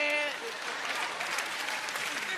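Live audience applauding, a dense even clatter of clapping, right after a man's held sung note ends at the start.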